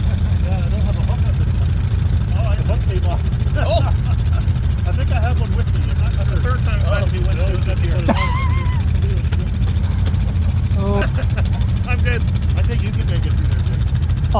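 ATV engine idling steadily close by, a constant low hum, with voices talking over it.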